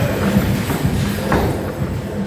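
Dull thud of a gloved boxing punch landing, about a second and a third in, over steady background music with a pulsing bass.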